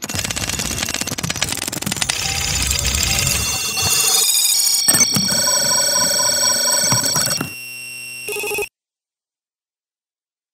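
Show intro sting of glitchy electronic sound design: a dense wash of static and data noise, then steady electronic tones with a rapid run of beeps, then a short buzz. It cuts off suddenly a little over a second before the end.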